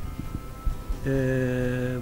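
A man's voice holding one long, level 'eee' hesitation sound for about a second, starting halfway through; before it, only faint low background noise.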